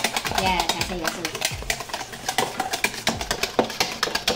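Wire balloon whisk beating cream in a bowl: a rapid, uneven run of clicks as the wires knock against the bowl.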